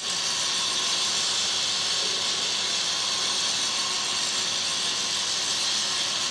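Angle grinder grinding against the metal side panel of a tram car body, running steadily under load with a high-pitched grinding hiss.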